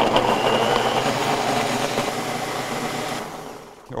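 Countertop blender running at high speed, puréeing roasted tomatillos, jalapeños, onion and garlic into a chunky salsa. The motor cuts off about three seconds in and winds down.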